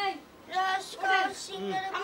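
A child singing in short, sing-song phrases with held notes.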